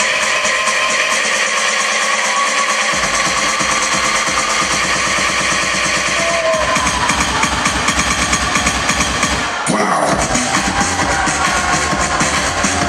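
Loud, edited hip-hop dance routine music mix. Heavy bass comes in about three seconds in, the beat fills out about halfway, and after a brief drop-out near the end a new section starts with a falling sweep.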